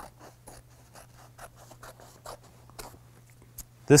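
Scissors cutting through fabric backed with Heat Bond fusible web, a quick series of short, irregular snips.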